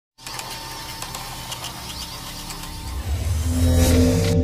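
Intro sound-design effects: a steady hiss laced with rapid mechanical ticks and clicks, then a deep rumble that swells up to its loudest at the end.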